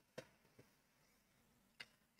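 Near silence: room tone with two faint clicks, one just after the start and one near the end.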